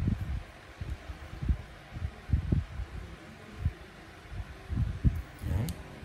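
Handling noise: irregular low thumps and rustling from hands moving close to the microphone.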